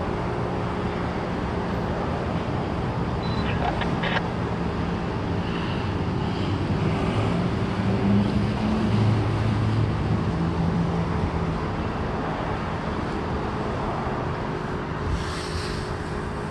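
Federal STH-10 fire siren holding a steady tone, faint under a broad rumble of traffic.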